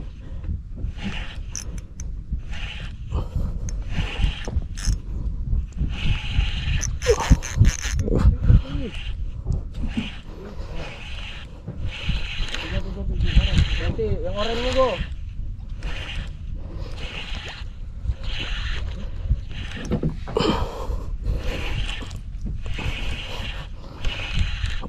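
A small Seahawk Shujitsu SE 800 spinning reel being cranked steadily to bring in a hooked fish on an ultralight jigging rod, giving a rhythmic whirr about once a second. Wind rumbles on the microphone throughout.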